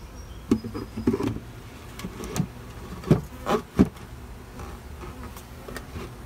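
Honeybees buzzing steadily around a hive. Over it come about five short, loud knocks in the first four seconds as the hive's wooden cover is set in place.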